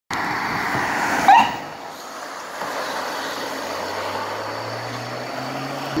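Road noise of an approaching emergency vehicle, with a short, sharp rising chirp about a second in, the loudest sound. A low, steady engine hum builds through the second half.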